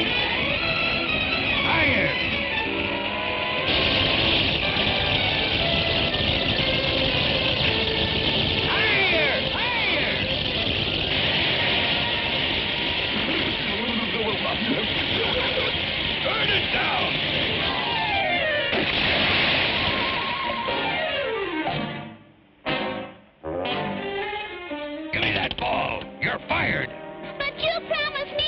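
Orchestral cartoon score with sound effects: busy music with a rushing noise laid over it for several seconds at a time, and sweeping glides up and down in pitch. Near the end the sound cuts out twice for a moment and returns in short choppy bits.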